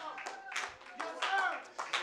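Scattered clapping from a congregation, with faint voices calling out.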